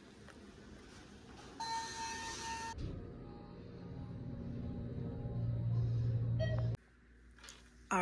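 Hotel elevator: a held electronic chime rings for about a second, then the car's low running hum builds as it travels and cuts off suddenly near the end.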